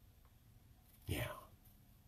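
Near silence, broken about a second in by a man's single soft, breathy "yeah".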